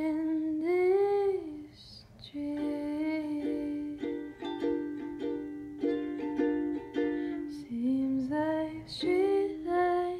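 Ukulele being played, with a voice singing over it in gliding, held notes at the start and near the end.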